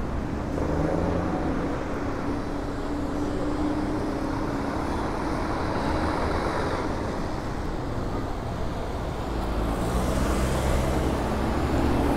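City road traffic at an intersection: motor vehicles passing with a steady engine hum. The traffic grows louder near the end as a vehicle draws close.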